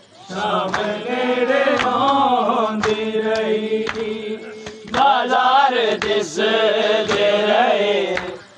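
A group of men chanting a Punjabi noha (Muharram lament) together, repeating a short refrain, with sharp slaps marking the rhythm. The chanting dips briefly a little before halfway and then comes back strongly.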